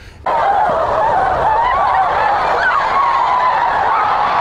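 A large crowd of women wailing and sobbing together: a loud, dense mass of high, wavering cries that starts suddenly a moment in.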